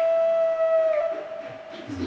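Background film music: a flute-like wind instrument holds one long note, which bends down slightly and stops about a second in. Quieter, scattered sounds follow.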